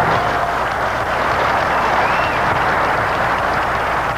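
Studio audience applauding, a steady even wash of clapping.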